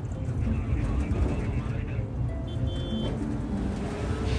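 Steady low rumble of a vehicle engine heard from inside the cab of a moving police jeep, with faint voices underneath.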